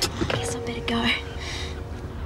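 A woman crying softly: two breathy sobs, about half a second and a second in, over soft held notes of background music.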